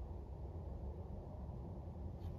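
Quiet, steady low background rumble with no distinct events; the paint brushwork itself makes no audible sound.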